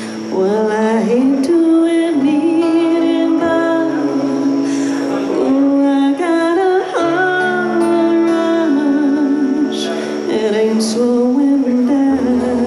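A woman singing a slow country song live into a microphone, holding long notes that waver, over a strummed acoustic guitar.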